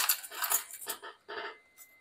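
Small metal objects clinking and rattling: a quick run of sharp clicks in the first second, then a few fainter ones.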